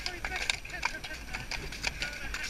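Ponies' hooves striking a soft, muddy track at a canter, a few uneven thuds over a steady low rumble of wind on the helmet camera's microphone.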